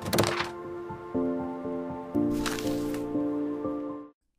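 Short intro music sting for an animated logo: held synth-like chords that step to new notes about once a second, with a whooshing swell at the start and another about two and a half seconds in. It cuts off abruptly at the end.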